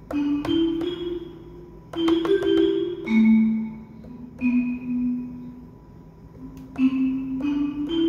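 Marimba preset ('Real Marimba') of the Hype plug-in on an Akai MPC One, played by hand from the pads: a slow melody of single struck notes in short groups, each note ringing out briefly.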